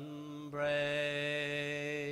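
A man singing unaccompanied, drawing out a long held note at the end of a line of a traditional Irish ballad. The note breaks briefly about half a second in, then swells and holds steady.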